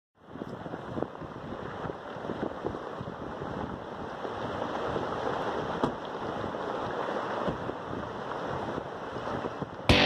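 Landslide: rock and debris pouring down a steep mountainside, a steady rushing noise dotted with sharp clacks of stones striking, building slightly. Guitar music starts just at the end.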